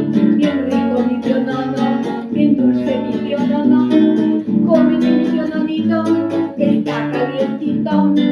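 Acoustic guitar strummed in a steady rhythm, accompanying a woman singing.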